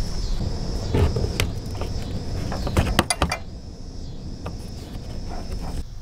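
Handling noise from work on a car's interior trim: rustling and rubbing with several sharp plastic clicks in the first half, then quieter.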